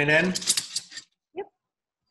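A few quick clinks of a metal spoon against a glass as whipped strawberry cream is spooned onto milk, following a brief spoken question.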